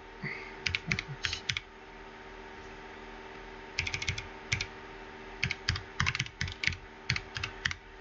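Typing on a computer keyboard in quick runs of keystrokes, with a pause of about two seconds after the first run, over a steady low hum.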